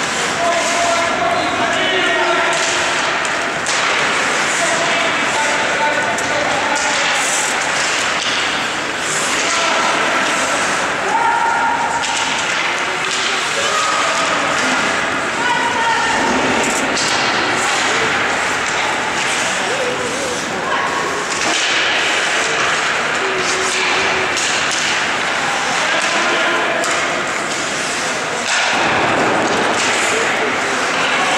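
Ice hockey game in a rink: voices calling out and talking through most of it, over a steady bed of rink noise, with scattered sharp knocks of sticks and puck.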